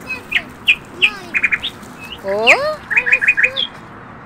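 Small birds chirping in the trees, with quick runs of short, high repeated notes and one louder rising call about halfway through.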